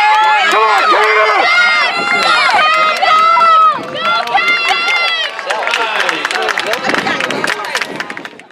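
Spectators in the stands shouting and cheering for runners in a track race, several voices yelling at once, one calling "Come on, Smith! Come on, Caden!" close by. The shouting drops a little under four seconds in and thins out after that.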